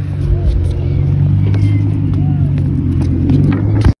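A motor running with a steady low hum, light clicks over it; it cuts off suddenly just before the end.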